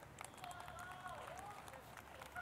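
Faint outdoor background with distant voices and a few light clicks.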